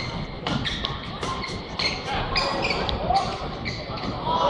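Badminton rally in a large hall: rackets strike the shuttlecock in a quick run of sharp hits, over the murmur of the arena crowd.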